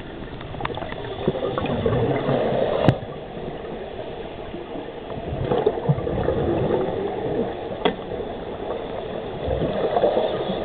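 Scuba diver's exhaled bubbles gurgling underwater in swells about every four seconds, with two sharp clicks.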